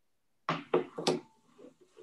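A few sharp clicks, about four in quick succession starting half a second in after a silent start, followed by faint low bumps.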